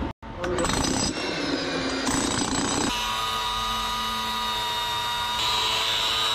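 Cordless angle grinder with a cut-off disc cutting steel rebar: rough, uneven noise at first, settling from about three seconds in into a steady whine.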